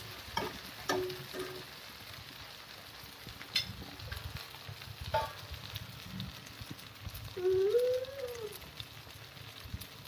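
Spatula stirring and scraping potatoes in a nonstick kadai with a light frying sizzle, with a few sharp clicks of the spatula against the pan. Near the end a wavering, voice-like call rises and falls for about a second, the loudest sound here.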